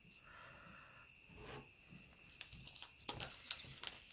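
Faint, scattered clicks and taps of trading cards being handled and set down on a wooden table, starting about a second and a half in.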